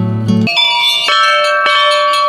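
Acoustic guitar music breaks off about half a second in, giving way to hanging temple bells ringing. A fresh strike comes about a second in, and the tones ring on.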